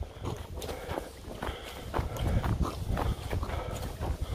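Boots crunching and squeaking through deep snow in a steady walking rhythm, about two to three steps a second.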